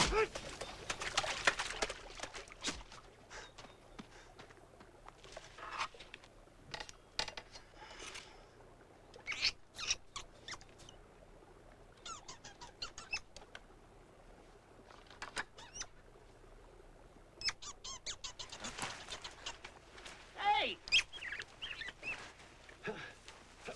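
Ferrets squeaking and chirping in short, scattered bursts. Splashing through shallow water comes in the first two seconds.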